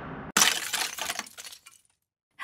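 A glass-shattering sound effect: a sudden crash about a third of a second in, then scattered tinkling pieces that die away over about a second and a half. The intro music is just fading out before the crash.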